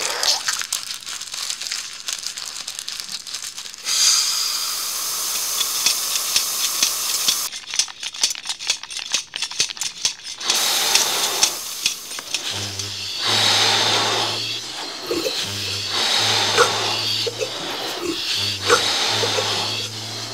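Hissing and rattling machine sound effects: a steady hiss that grows louder about four seconds in, then a run of rapid clicking. Halfway through, a low pulsing bass line joins in under the noise.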